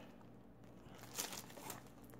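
Faint crinkling of trading-card packaging being handled, in a few short rustles.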